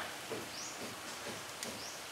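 Faint outdoor ambience with two short, high rising bird chirps, one about half a second in and one near the end.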